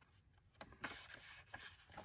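Faint rustle of paper pages being handled and shifted, with a couple of light ticks, starting about halfway through.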